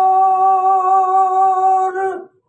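A solo voice singing a Punjabi naat, holding one long note steady in pitch, with no instruments under it.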